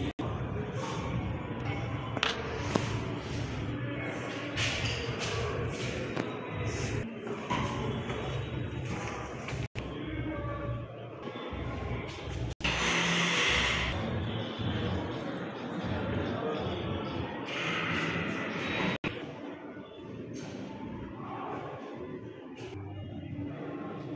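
Indistinct voices and room noise in a hall, with a few thumps. The sound drops out for an instant three or four times.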